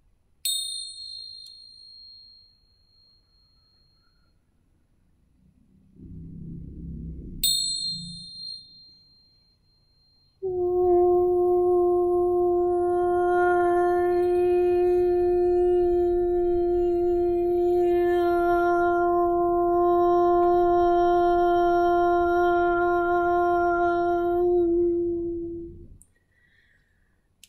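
Tingsha cymbals struck together twice, several seconds apart, each time ringing with a high, bright tone that fades over a second or two. Then a woman's voice holds one long, steady sung note for about fifteen seconds, toning in meditation, and stops shortly before the end.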